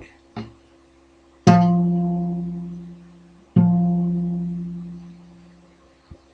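The same low guitar note plucked twice, about two seconds apart, each ringing out and fading away; it is the lowest note of a riff, close to 200 Hz.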